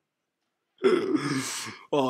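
A man's short, raspy throat sound lasting about a second, starting just under a second in, after a silent gap.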